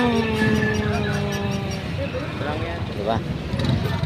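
A voice held on one long note for about two seconds, then shorter snatches of voices, over steady street-market hubbub and motorcycle traffic.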